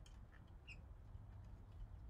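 Near silence: faint outdoor background with a few light clicks and one brief high chirp about two-thirds of a second in.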